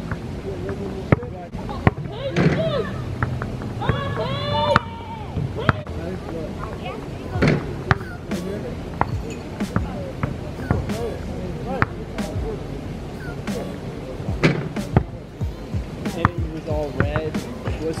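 A basketball bouncing on an outdoor court: irregular sharp thuds throughout, over background music, with brief voices about two and four seconds in.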